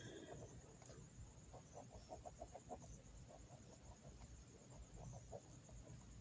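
Near silence, with a faint animal calling in short, irregular notes in the background.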